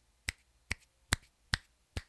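Fingers snapping five times in an even rhythm, about two and a half snaps a second, beside and behind a cardioid dynamic microphone to show how it rejects sound from its sides and back.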